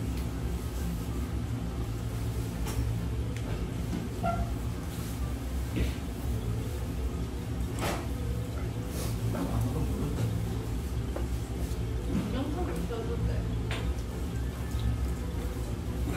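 Restaurant table sounds: a steady low hum under faint background voices and music, with a few light clicks of chopsticks and a metal spoon against ceramic bowls and cups.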